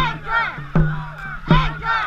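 A dragon boat crew shouting together in a steady rhythm, about one shout every three quarters of a second, each shout opening with a sharp low beat that keeps time with the paddle strokes.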